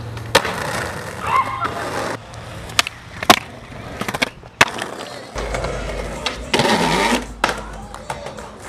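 Skateboard wheels rolling on pavement, broken by several sharp clacks of the board's tail popping and landing, the loudest a little over three seconds in.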